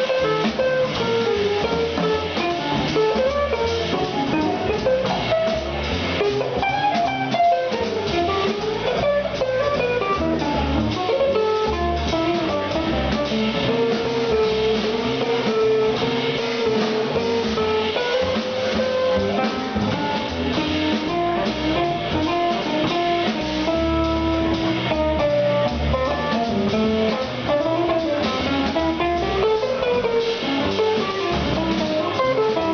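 Live trio of hollow-body electric guitar, upright double bass and drum kit playing continuously, the guitar carrying a moving melodic line over the bass and the drums' cymbals.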